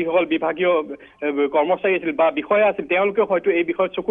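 Speech only: a man talking steadily over a telephone line, with a narrow, phone-like sound.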